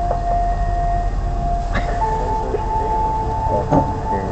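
A steady held tone that steps up to a higher pitch about halfway through, over a low rumble.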